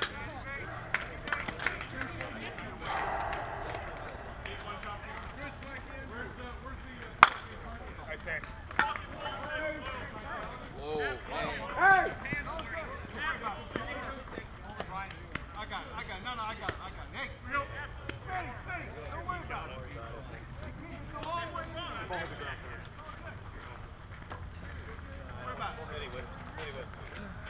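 Players' voices talking and calling out across an open softball field, too distant to make out. A single sharp crack comes about seven seconds in, the sound of a bat striking a softball.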